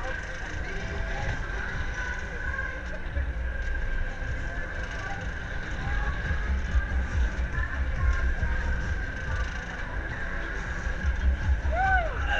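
Rumble of wind on the microphone aboard a spinning Huss UFO fairground ride, under fairground music and voices.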